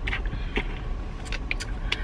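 Car engine idling, a low steady hum heard inside the cabin, with a few faint clicks and crinkles from a plastic water bottle being drunk from.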